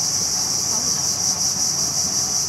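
Steady, high-pitched chorus of insects, unbroken and even in level.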